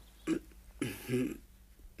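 A man's brief wordless mouth and throat noises in a hesitant pause in the middle of a sentence: a short click about a third of a second in, then two short low voiced sounds around a second in.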